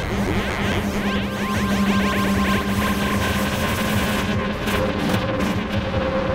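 Make Noise Morphagene granular module playing back a sample with phase modulation from a modular synthesizer: a dense electronic texture over steady drone tones, with quick falling pitch sweeps repeating through the first half. Scattered clicks come in over the last two seconds.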